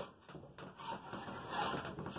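Lee Load-All shotshell press worked by its lever, pressing a 209 primer back into a shotgun hull: faint rubbing and a few light clicks from the handle and linkage.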